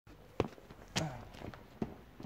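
Footsteps of shoes on asphalt: three steps, the first the loudest.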